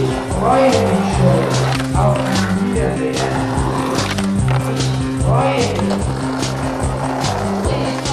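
A music track with a steady, repeating bass line, over which a skateboard rolls on asphalt and grinds along a concrete curb, with sharp clacks of the board hitting the ground.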